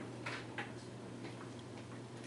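Quiet room tone in a pause between speech: a steady low hum, with two faint short hisses about a quarter and a half second in.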